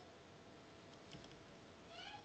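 Near silence: faint room tone over an online call, with a few faint brief sounds about a second in.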